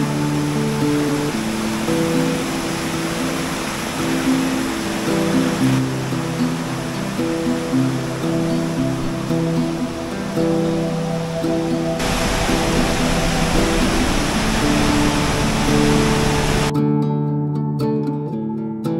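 Acoustic guitar background music over the loud, steady rush of a forest stream running over rock cascades. The rushing noise changes character about twelve seconds in and drops out about a second before the end, leaving the guitar alone.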